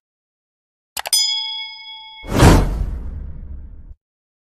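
A bright bell-like ding, struck just after a couple of clicks and ringing for about a second, then a rush of noise like a whoosh that swells to the loudest point and fades away. It cuts off suddenly into silence.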